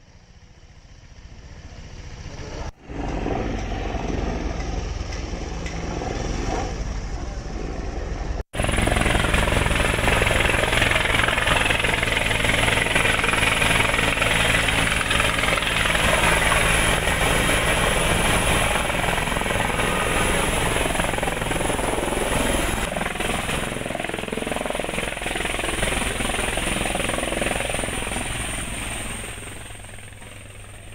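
A helicopter's rotor and turbine. First it is heard in flight, growing louder. After a cut about eight seconds in, it is close by as it lands: a loud rushing rotor wash with a steady high turbine whine, fading near the end.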